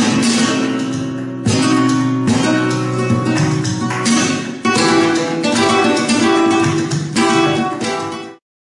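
Flamenco guitar, a copy of a 1932 Simplicio, played with a capo: strummed chords and ringing notes, with sharp new strokes about one and a half, two and a half, four and a half and seven seconds in. The sound fades out near the end.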